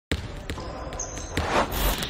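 Intro sound effect of a basketball bouncing on a hard court, a sharp knock about every half second over a noisy hiss. The hiss swells near the end.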